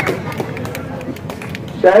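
Crowd applause, scattered hand claps over crowd noise, thinning out and fading before a man's voice over the PA returns near the end.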